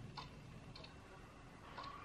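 Near silence with three faint soft clicks: lips parting and the applicator wand touching the lips while clear lip gloss is put on.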